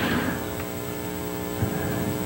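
Steady electrical mains hum, with a couple of faint small ticks.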